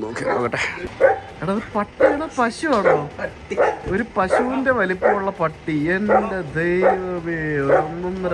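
A golden retriever whining and yipping, mixed with people's voices; the longest whine, with a wavering pitch, comes near the end.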